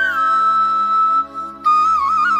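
Intro music: a flute melody over sustained background chords, its held high note sliding down at the start. The music dips sharply in level for a moment a little past halfway, then the flute line returns.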